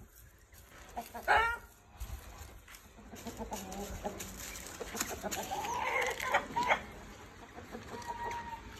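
Chickens clucking: a short call about a second in and a longer call rising and falling between about five and seven seconds, over light scattered crunching on dry leaf litter.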